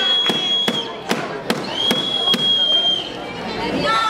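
A protest crowd with two long, steady blasts on a high-pitched whistle, one at the start and a longer one from about two seconds in. Sharp cracks beat through it about two to three times a second. Voices rise into a chant near the end.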